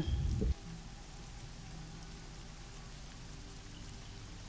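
Faint steady hiss with a few low, held tones under it: a quiet background ambience bed. A brief low rumble sounds in the first half second.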